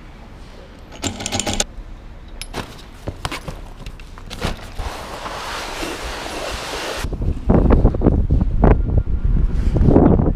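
Clicks and metallic clinks of a T-handle wrench working on a BMX's front axle as the bike is taken apart, followed by rustling of a bag. About seven seconds in the sound changes suddenly to wind rumbling on the microphone, with a few thumps.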